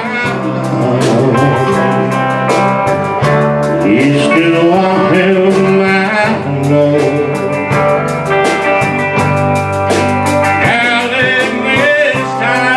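Live country band playing: guitars, electric bass, drums and keyboard, with a lead melody line over a steady beat.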